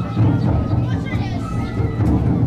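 Chatter of a crowd with children's voices, over music that keeps going throughout.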